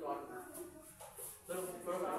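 Indistinct speech: a voice talks briefly, pauses for about a second, then talks again near the end.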